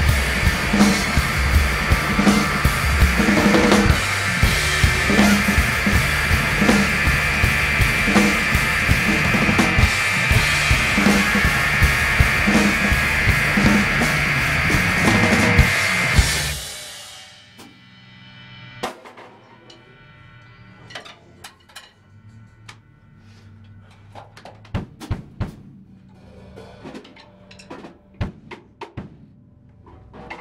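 Two rock drum kits played together hard, with bass drum, snare and a constant wash of cymbals, stopping abruptly on a final hit about sixteen seconds in. After that come only scattered clicks and knocks of drumsticks and handling of the kits.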